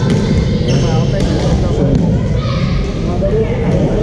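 A badminton rally in a large gym: rackets hitting the shuttlecock in short sharp clicks, court shoes squeaking briefly on the floor several times, over echoing voices from the surrounding courts.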